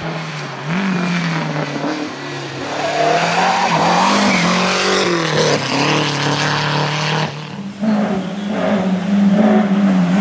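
Rally car engines revving, the pitch climbing and dropping as the cars accelerate and change gear. About seven seconds in the sound breaks off and another car's engine takes over, again rising and falling in revs.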